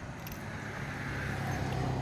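A road vehicle approaching, its low engine hum and tyre noise growing steadily louder.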